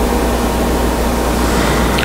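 Steady, even hiss of room noise with a low hum underneath, in a pause between spoken sentences.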